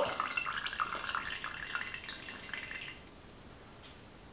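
Lemon hydrosol trickling and dripping from a glass separatory funnel's stopcock into a metal cup, a thin stream while the hydrosol is drained off from beneath the essential oil layer. It stops about three seconds in.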